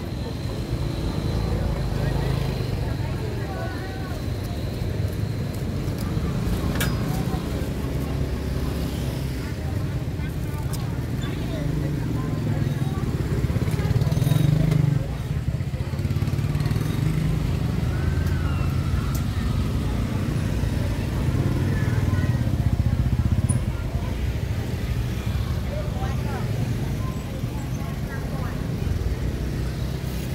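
Street market ambience: voices talking in the background while motor scooter engines run and pass close by. The engine sound swells twice, about halfway through and again about two-thirds through.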